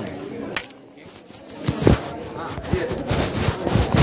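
Handling noise on the camera's own microphone: irregular bumps and rubbing as the camera is moved and lowered, starting about two seconds in, over background voices.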